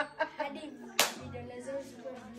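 A woman laughing in short bursts, then one sharp hand clap about a second in, followed by voices.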